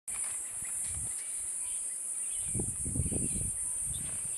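A steady high-pitched chorus of insects, with faint short bird chirps over it. From about halfway through, low rumbling bumps join in.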